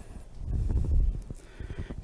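A man's breath blowing on a close headset microphone as he exerts himself in a resistance-band chest press, a low muffled rumble lasting under a second, about halfway through.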